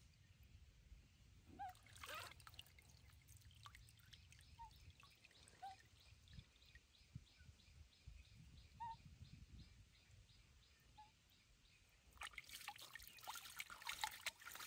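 Faint trickling and splashing of water as a baby monkey is bathed in shallow water by hand, with a short splash about two seconds in and louder, steady splashing and water running off the hands in the last two seconds. Faint short chirps come and go in the background.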